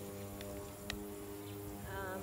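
A steady droning hum runs throughout, with two faint clicks about half a second and a second in as a black plastic nursery pot is pulled off a tomato's root ball and set down.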